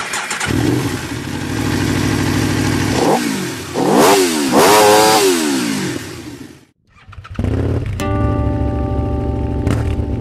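Aprilia RSV4R's V4 engine idling and blipped twice, the second rev higher and longer, then cut off about seven seconds in. A motorcycle engine then idles again, with guitar music coming in underneath.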